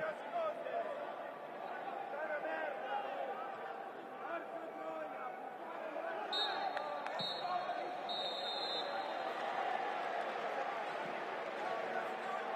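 Referee's whistle blown three times a little after halfway, two short blasts and then a longer one: the full-time whistle. Around it, scattered shouts and voices of players and a sparse crowd.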